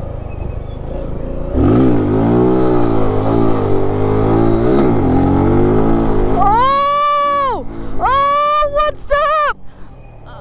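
Mini motorcycle's single-cylinder 125 cc engine revving hard under full throttle for a wheelie, its pitch climbing, dropping twice and climbing again as it is shifted up mid-wheelie. It is followed by three high, excited whoops from the rider.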